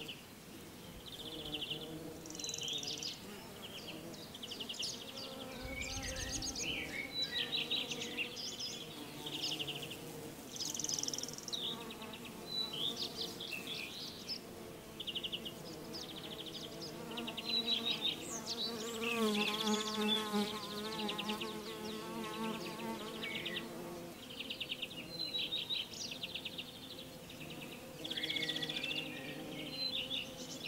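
Bees buzzing: a steady low hum that wavers in pitch and swells as one passes close, about two-thirds of the way in. Short high chirps sound over it throughout.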